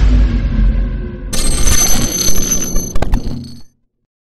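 Intro sound effects: a deep boom that fades away, then a bright ringing effect with steady high tones and a few sharp clicks, cutting off abruptly shortly before the end.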